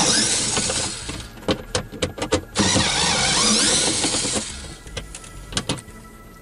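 Cordless drill-driver running in two runs of about two seconds each, backing out two 7 mm screws. Sharp clicks come between the runs and again near the end.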